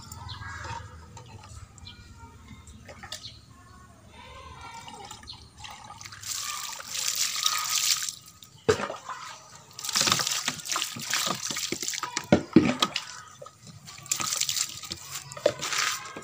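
Water poured from a plastic dipper into a plastic bottle, splashing and gurgling in three separate pours after a quieter start with a few drips.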